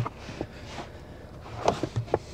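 SUV cargo floor panel set back down over the spare-tire well, giving a short knock at the start, followed by faint scattered handling clicks and small knocks, the most prominent about 1.7 s in.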